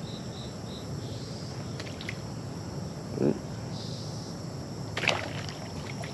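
Outdoor pond ambience with a cricket chirping in quick even pulses near the start, and a few light water splashes and clicks as a topwater rat lure is worked across the surface and fish strike at it.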